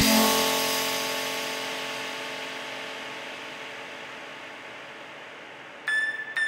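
Electronic dance track breakdown: the full beat cuts out at once, leaving a sustained synth chord that fades slowly away. A new phrase of short plucked synth notes comes in near the end.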